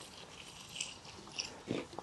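Hand trowel digging into garden soil: a couple of faint, short scrapes about a second in, over a light steady hiss.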